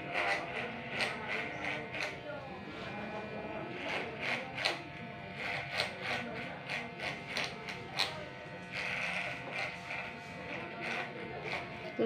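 Corded electric hair clippers buzzing steadily as they are run upward through short hair at the back of the head, with frequent short crackles as the blades cut.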